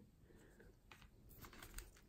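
Near silence, with a few faint, soft clicks and taps of card stock and a paper sticker packet being handled, bunched about a second in.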